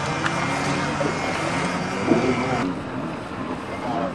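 Steady outdoor background noise with faint, indistinct voices.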